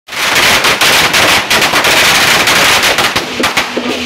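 A string of firecrackers going off in a dense, rapid crackle of bangs, loud throughout and thinning out over the last second as processional music with a repeating beat comes in.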